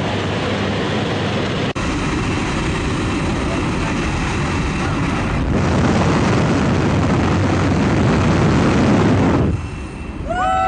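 Jump plane's engine and propeller noise mixed with a loud rush of wind through the open door, steady throughout. It breaks off sharply about a second and a half in, gets louder from about halfway, and falls away just before the end.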